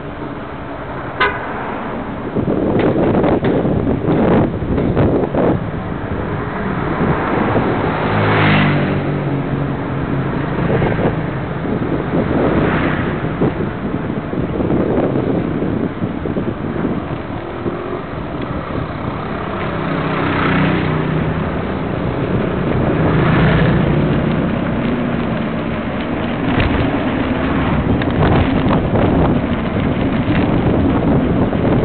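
Loud wind noise on a bicycle-mounted camera's microphone while riding, with motor vehicles passing several times, each swelling and fading over a second or two.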